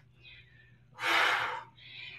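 A woman's short, audible breath about a second in, drawn with the effort of working a barbell through a deadlift.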